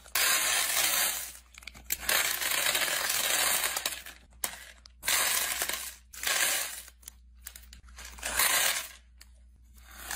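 Small craft beads being poured into a clear acrylic tray, a rattling rush of beads repeated in about five separate pours with short pauses between.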